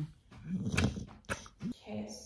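A dog vocalizing up close: a rough, noisy sound about half a second in, then a short rising whine near the end.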